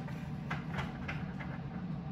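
Handling noises: a string of about five small, sharp clicks and scrapes in the second half, as a small drop-in carbide engraving cutter is fumbled out, over a steady low hum.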